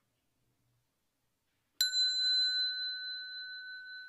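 A small Buddhist hand bell struck once with a thin striker, a little under two seconds in: a clear, pure bell tone with a higher overtone that rings on and slowly fades.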